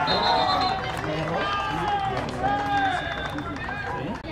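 Several people's voices talking and calling out over one another, with no clear words.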